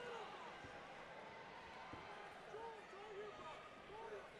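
Faint hubbub of an arena crowd around a fight cage, with a few short, distant shouted calls and one faint knock about two seconds in.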